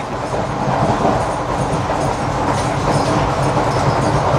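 Steady running noise heard from inside an Indian Railways passenger coach of the Saurashtra Mail, the wheels running on the track at about 105 km/h.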